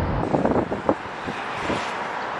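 Wind buffeting the microphone over a steady hum of distant city traffic. The low rumble eases off early, and a few short light knocks follow within the first second.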